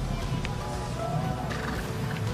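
A horse neighs faintly, with a curved, wavering call about a second in, over steady background music.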